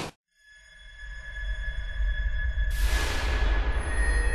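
Heavy metal music cuts off abruptly, then a low, dark drone fades in under a steady high ringing tone. Near the end a whoosh of noise sweeps in and slowly fades.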